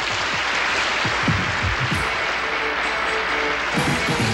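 Country band starting up a square-dance tune, with audience applause over it.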